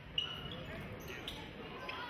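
A basketball bouncing on a hardwood gym floor during live play. Sneakers give short high squeaks, the loudest about a fifth of a second in, over voices in the hall.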